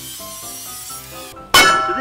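Background music with a stepping melody, and about one and a half seconds in a single loud metallic clang that rings on: a sledgehammer striking a steel post driving cap on top of a 4x4 wooden post.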